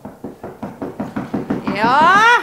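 Rapid knocking on a door, about eight quick knocks a second, answered near the end by a high voice that rises and then falls in pitch.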